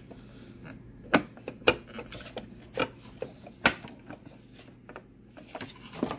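Handling sounds at an embroidery machine: several sharp clicks and knocks about a second apart, with faint rubbing of vinyl in between, as the hoop and the vinyl strip are worked on.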